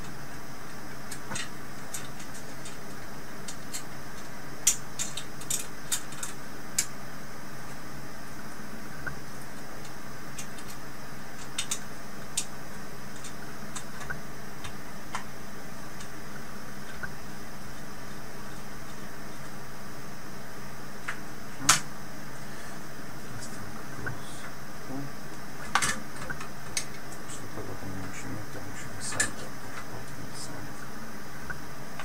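Scattered sharp metallic clicks and taps of a screwdriver and parts against a steel amplifier chassis as it is screwed back together, over a steady background hiss.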